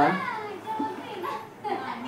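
Speech only: a man's voice trailing off, with children's voices. The words are spoken in a small room.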